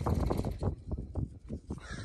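Wind buffeting the microphone: an irregular, gusty low rumble that eases off toward the end.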